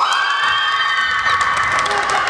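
Teenage girls cheering with a long high-pitched scream that rises at the start and is held, several voices together, with scattered claps.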